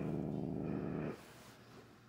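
Domestic cat growling low and steadily, the sign of an upset, frightened cat being handled for nail clipping; the growl breaks off about a second in.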